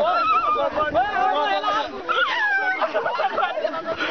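Several people's voices laughing, shouting and whooping over one another, with high sliding cries.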